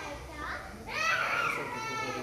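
High-pitched voices of young children talking and calling out, in short bursts about half a second in and again from about a second in.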